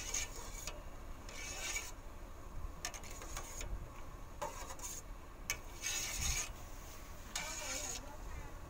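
A metal spoon scraping around the bottom and sides of a stainless steel pot while stirring a pot of jelly liquid, in short rasping strokes about once a second, some longer than others.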